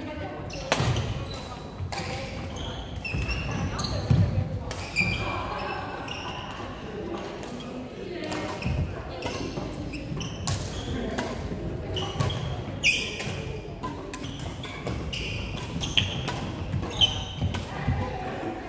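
Badminton rackets striking a shuttlecock in rallies, giving sharp hits scattered throughout, with shoes squeaking on the wooden court floor. The sounds ring out in a large hall, with players' voices over them.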